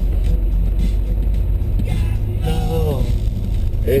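Steady low rumble of a car on the move, heard from inside the cabin in the back seat.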